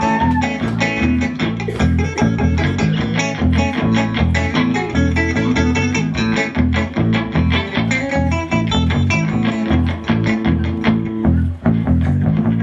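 Live band instrumental passage without vocals: electric guitar playing over a steady, pulsing low bass line.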